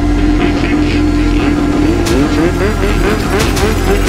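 A running engine over a music track with deep bass. The engine holds a steady note, then about halfway in turns into a fast repeating rise in pitch, about four to five a second.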